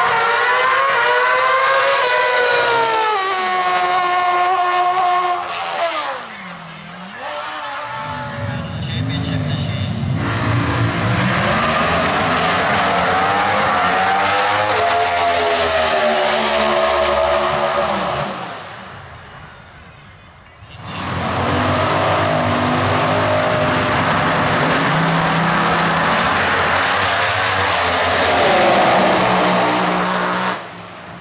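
Drag racing engines at full throttle: a pair of drag motorcycles, then a pair of drag cars, each making a pass. The engine pitch rises and breaks in steps with the gear changes, and there is a brief quieter gap about two-thirds of the way through.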